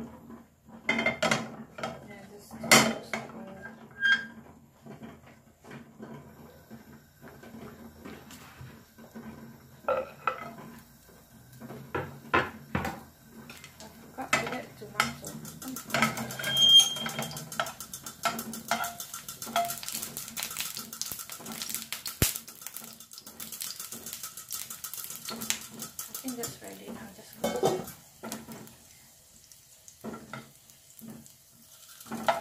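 Metal cooking utensils knocking, clinking and scraping against pans on a gas hob, in repeated short strikes. From about halfway in, a thin sizzle of food frying in hot oil in a non-stick frying pan runs under the stirring for some ten seconds, then fades out.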